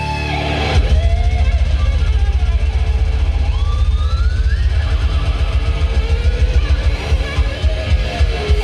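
Live old-school death metal band playing loud and distorted, heard from the crowd. The drums and bass come in hard and fast about a second in, and a lead guitar slides upward in pitch around the middle.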